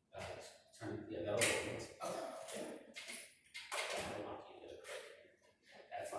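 A person's voice talking in several bursts, the words not made out.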